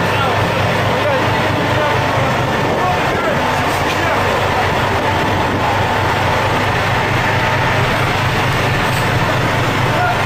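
Steady, loud drone of a fishing boat's engine or deck machinery running without change, with voices faintly under it.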